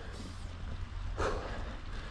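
Mountain bike rolling along a dirt trail: a steady low rumble of riding noise on the camera microphone, with a short hiss about a second in.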